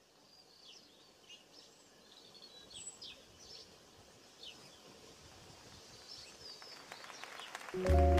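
Faint, scattered bird chirps over a low hiss, then loud music with sustained tones and a stepping bass line starts abruptly near the end.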